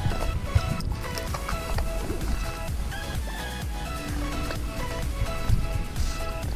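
Background music with a run of steady, changing notes, over a continuous low rumble.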